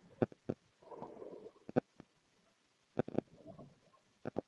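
Sparse faint clicks and light knocks, with two short soft rustling noises about a second in and at about three and a half seconds, heard in a wordless stretch of a recorded phone voice message.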